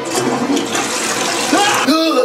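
A toilet flushing, a loud rush of water. A man's voice rises over it near the end.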